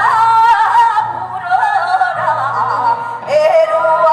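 Female gugak (Korean traditional music) singers singing a melody with wavering, ornamented pitch into handheld microphones, amplified through a stage PA. Underneath runs an instrumental accompaniment with sustained low notes.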